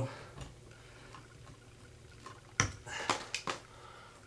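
Pliers snipping through a bare copper ground wire: one sharp click about two and a half seconds in, followed by a few lighter clicks of the tool and wire being handled.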